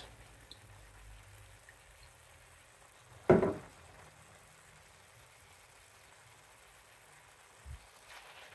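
Faint, low sizzle of chicken and vegetables frying in a pan, with one brief louder sound about three seconds in and a soft thump near the end.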